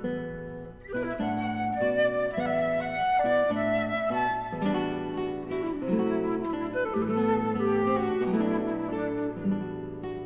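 Concert flute and classical guitar playing a chamber duo: a flute melody of held notes over fingerpicked guitar accompaniment. The sound thins briefly in the first second, then both instruments play on.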